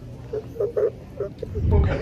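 Small shaggy terrier-type dog held up to the microphone, making a few short low grumbling sounds. A deep rumble builds near the end.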